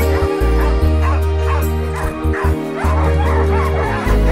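Music with a steady low bass line, over dogs barking and yipping.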